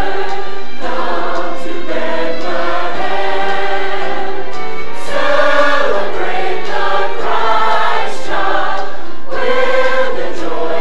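Large church choir of adults and children singing together, loud and steady, on held notes that change about once a second.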